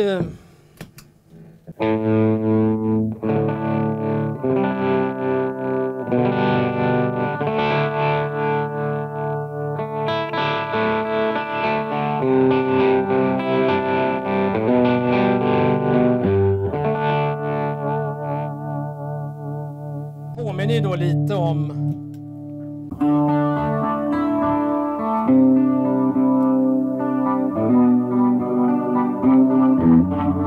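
1965 Gibson SG Junior electric guitar played through a tube amp and a home-made tremolo pedal: slightly distorted chords and riffs whose volume pulses quickly and evenly. The playing eases off briefly about 20 seconds in, then picks up again.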